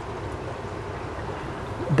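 Steady hiss of running aquarium filtration in a room full of tanks: air pumps and bubbling sponge filters.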